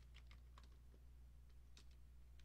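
Faint, scattered clicks of computer keys being pressed, a handful of keystrokes over a steady low electrical hum.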